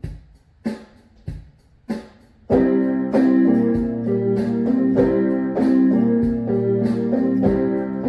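Electronic keyboard starting a song: four sharp count-in clicks about two-thirds of a second apart, then about two and a half seconds in, full sustained chords over a steady beat.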